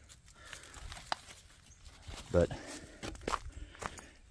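Footsteps on leaf-littered dirt ground: a few faint, scattered steps with light rustling.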